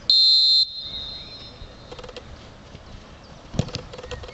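Referee's whistle: one short, loud, high blast for about half a second, signalling the restart. About three and a half seconds later a football is kicked with a sharp thud.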